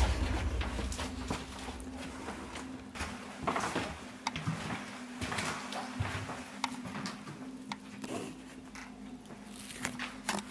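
Scattered faint clicks and rustles of people moving about a small room, with camera handling noise, over a steady low hum.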